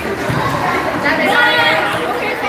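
Several people's voices chattering and calling out together, with one higher voice calling out more loudly about a second in.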